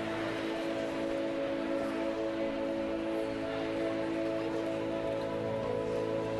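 Soft background music: a sustained chord held steadily, over the even, noisy murmur of a congregation greeting one another.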